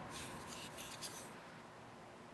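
Faint rubbing of fingers on a folding knife's handle as it is turned over in the hand, with a small tick about a second in, dying away in the second half.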